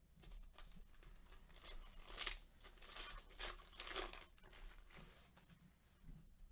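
Foil trading-card pack wrapper being torn open and crinkled by gloved hands: a faint run of short, crisp rustling tears, loudest around the middle.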